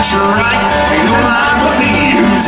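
A live bluegrass band playing, with upright bass, acoustic guitar and banjo, over a steady bass beat.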